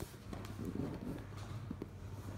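Playing cards being handled and picked from a deck, with a few light taps and soft rustling.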